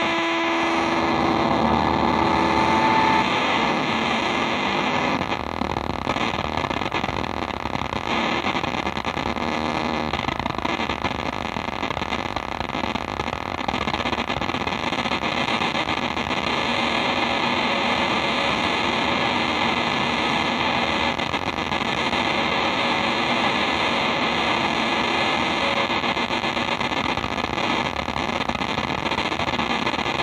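Electric guitar played through effects pedals as a dense, steady wall of distorted noise. A few held pitched tones sound over it at the start and fade out within the first few seconds.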